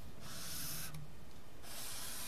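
Sharpie marker drawn across paper in two long strokes, a dry scratchy rub of the felt tip lasting about half a second each, one just after the start and one near the end.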